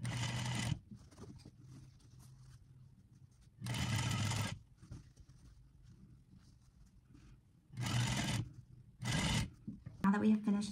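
Sewing machine top-stitching a curved seam through fabric in four short runs: one at the start, one about four seconds in, and two close together near the end. Each run stops while the fabric is turned under the presser foot.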